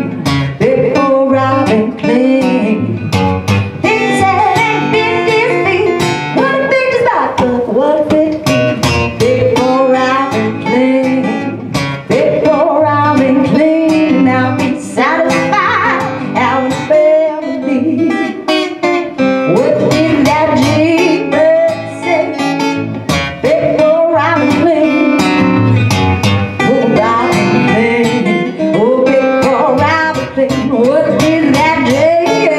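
A woman singing while strumming an acoustic guitar, a live solo performance with steady, regular strums under the vocal line.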